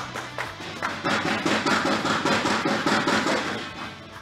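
Applause: a small group of people clapping over background music, dying away near the end.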